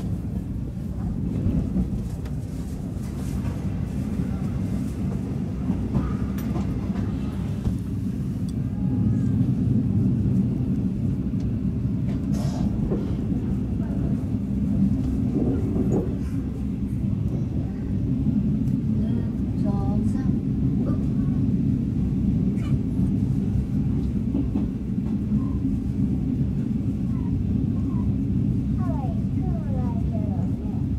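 Steady low rumble of a moving passenger train carriage running on the rails, heard from inside the carriage, with a couple of sharp clicks about halfway through.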